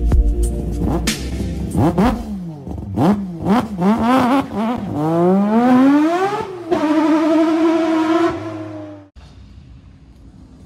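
A car engine revving over music: several quick rises and falls in pitch from about two seconds in, then one long climb to a high held note that breaks off suddenly near the end.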